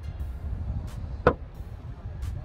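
Low, steady background rumble with a single sharp click a little after a second in.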